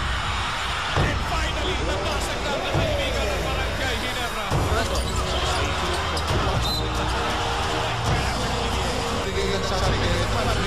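A basketball bouncing on a hardwood court several times, a second or two apart, over steady arena crowd noise and music.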